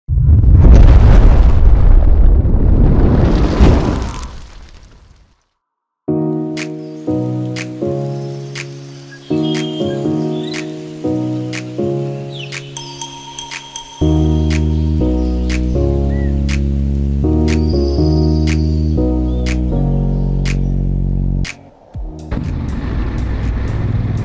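Intro music: a loud whoosh swells and fades, then after a brief silence a tune of stepped notes over an even ticking beat, with a deep bass joining about halfway. The music stops shortly before the end, and the steady running noise of the motorcycle on the road takes over.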